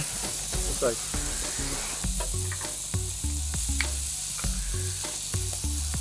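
Meat and kimchi sizzling on a tabletop Korean barbecue grill: a steady frying hiss, with a few light clicks of utensils.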